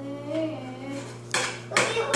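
Two sharp clattering knocks of hard objects, about half a second apart, follow a child's brief high-pitched vocalizing.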